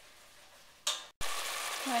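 A single metal clank of a spoon against a stainless steel pan. About a second in, a steady sizzle of chopped green peppers and onions sautéing in a little water in the pan.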